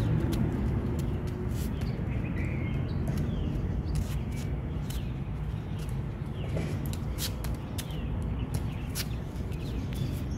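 Outdoor ambience: a steady low rumble, with scattered sharp taps and a few faint bird chirps.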